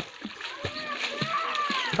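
Water splashing as a child swims, arms and legs slapping the surface in a quick run of repeated splashes.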